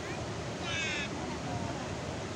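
Steady rushing of water pouring through the open spillway gates of Khun Dan Prakan Chon Dam and crashing into the river below. A single brief high-pitched call sounds over it a little under a second in.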